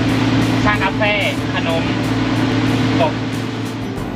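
A boat engine idling, a steady low drone.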